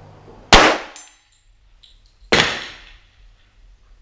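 Two pistol shots from a Sig Sauer 1911 TTT in .45 ACP, firing 230-grain round-nose reloads, about two seconds apart. A faint high metallic ring after the first shot is the steel plate being hit far downrange.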